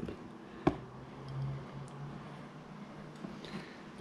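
Quiet hand-handling at a fly-tying vise: one sharp click under a second in, a short faint low hum a moment later, and a few faint ticks near the end.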